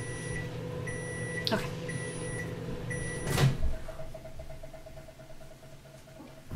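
Microwave oven finishing its heating cycle: the oven hums while it sounds four short beeps about a second apart, signalling that the time is up. About three and a half seconds in, a loud click, the door being opened, cuts off the hum.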